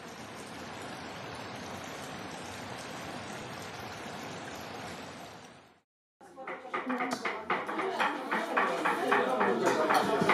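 A mountain stream rushing over rocks, a steady even rush that fades out a little before halfway. After a brief silence, room sound takes over: people talking with many short sharp knocks, from vegetables being chopped in the kitchen.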